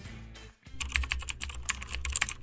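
Keyboard typing sound effect: a fast run of clicks that starts about half a second in and plays over background music with a deep bass.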